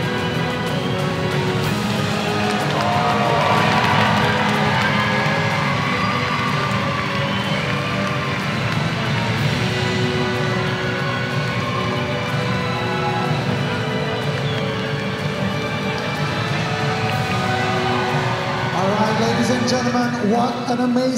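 Music playing over a crowd's noise and cheering, with indistinct voices.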